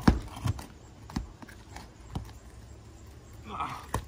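A steel flat pry bar working under asphalt shingles: a few sharp metal knocks and scrapes against the shingles as it is forced beneath them. The shingles' tar sealant line is holding them down against the prying.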